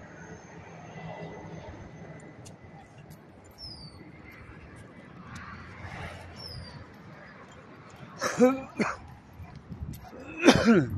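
A dog giving two short whining yelps that bend in pitch, near the end, after several seconds of faint background.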